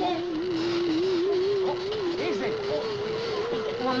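Motorized barber chair whining as it lifts, a wavering tone that climbs slowly in pitch: the lift has been switched on by mistake and keeps raising the chair.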